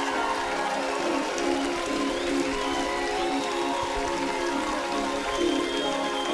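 Live alternative-dance band music played through a festival PA: sustained synthesizer chords held over a noisy electronic wash, with no sharp drum hits standing out.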